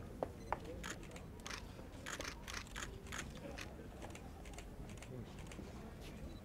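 Quiet open-air crowd ambience: a steady low rumble with many scattered, irregular sharp clicks and ticks, two louder ones just after the start.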